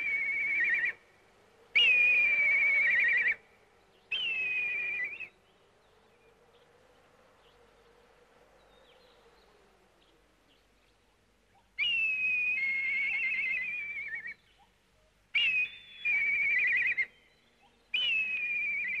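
Eagle cries: high, falling, quavering screeches, each about a second long. Three come in the first five seconds, then after a quiet lull a run of several more from about twelve seconds in.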